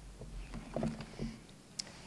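Faint handling noises at a lectern picked up by its microphone: papers being set down and soft knocks against the wooden podium, with a sharp click near the end.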